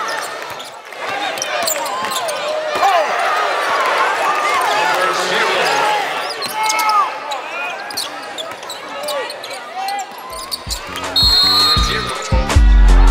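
Live basketball game on a hardwood court: sneakers squeaking in short sliding chirps, the ball bouncing, and arena crowd and player voices. About ten and a half seconds in, outro music with a low repeating beat comes in.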